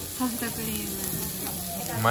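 Lamb sizzling steadily on a cast-iron jingisukan grill pan, a continuous frying hiss.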